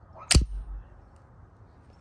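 A single sharp gunshot bang about a third of a second in, followed by a short low rumble.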